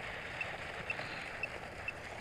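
Quiet night-time outdoor ambience: a steady faint hiss with a short high-pitched pip repeating about twice a second.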